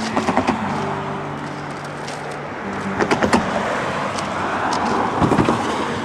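Cars driving past on the road: engine hum and tyre noise, with one car's tyre noise building to its loudest about five seconds in.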